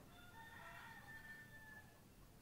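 A faint, drawn-out bird call lasting about a second and a half, several pitches held together, over quiet background noise.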